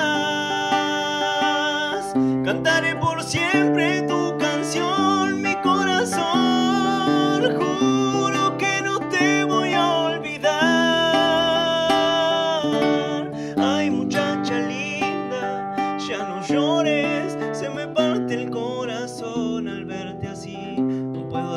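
A man singing long, wavering held notes over an acoustic guitar, in a solo voice-and-guitar ballad.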